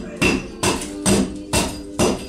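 A short-handled hatchet striking a timber beam over and over, about two sharp blows a second, chopping away damaged surface wood.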